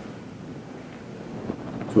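Low steady hiss of room noise, with a faint click about one and a half seconds in.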